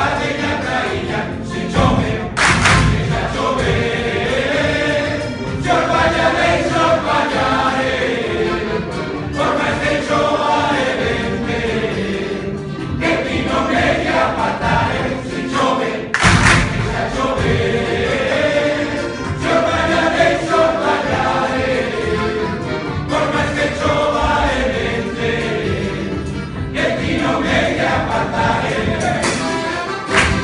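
Male choir singing a Galician folk song together, accompanied by guitars, a lute-like plucked instrument, accordion and drum. Two loud thumps stand out, about two and a half seconds in and again about sixteen seconds in.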